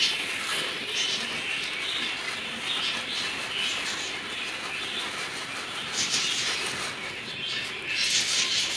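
Pearl millet (bajra) seed poured from a plastic bag into a plastic tub: a steady hiss of falling grains.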